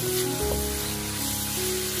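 Background music with slow held notes over the steady sizzle of cauliflower, carrots and pork belly stir-frying in a hot wok.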